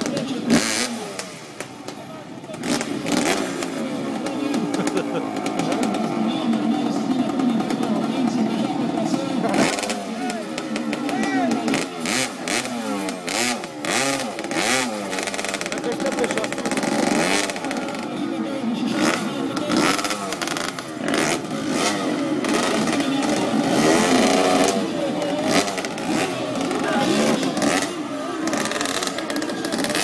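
Off-road motorcycle engine revving up and down over and over while the bike is worked over a tyre obstacle, with crowd voices and shouting throughout.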